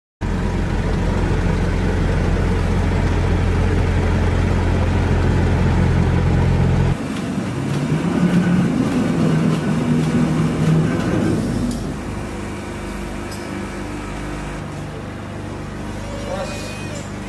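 Heavy lorry's diesel engine running with a loud, steady low rumble for the first seven seconds. It cuts off suddenly, followed by the rolling and clatter of a hand pallet truck moving a loaded pallet across the trailer floor, then a quieter steady machine hum.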